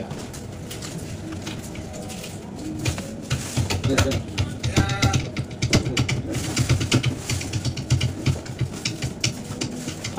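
Indistinct voices in the background with many small scattered clicks and taps, growing busier after about three seconds.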